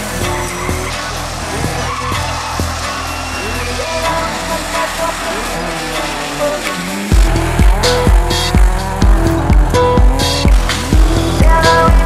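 Lada rally car engines revving as the cars slide sideways on gravel, with tyre squeal, mixed under a music track. A heavy, regular bass beat comes in about seven seconds in.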